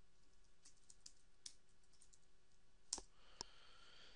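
Faint computer keyboard typing, a string of light keystrokes, followed by two sharper clicks about three seconds in.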